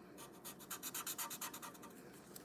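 Sharpie marker tip scratching on paper in quick, rapid back-and-forth strokes, about eight a second, as a small dark area is colored in.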